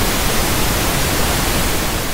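Steady hiss of television static, an even white noise.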